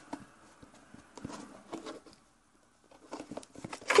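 Yellow plastic sandwich box being handled, its snap-on lid opened and pressed shut: a few soft plastic clicks and taps, with a short quiet gap in the middle and a cluster of clicks near the end.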